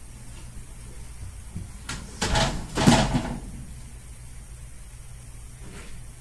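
A glass reptile enclosure's door sliding shut: a brief click about two seconds in, then a scraping rush lasting about a second.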